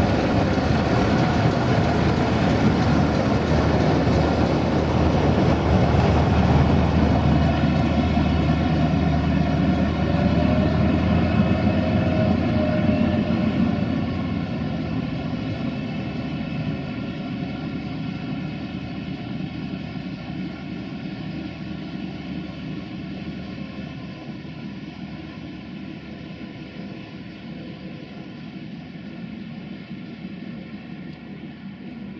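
LDH1250 diesel-hydraulic shunting locomotive passing close by: loud wheel and engine noise for the first half, then the diesel engine's steady drone with several held tones fading gradually as it moves off.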